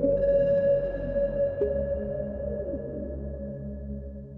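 Techno track playing without vocals: a long held synth note, reached by a rising glide just as it begins, sounds over a repeating bass pattern.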